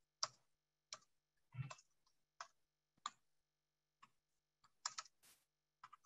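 Faint, irregular clicking of computer keyboard keys, about one or two clicks a second, with a short hiss near the end.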